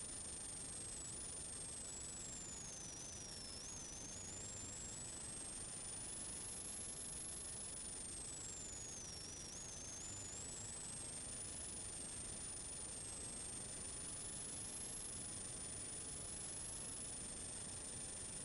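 Steady faint hiss, like recording noise or static, with a few faint high whines, unchanging throughout; no engine or road sound stands out.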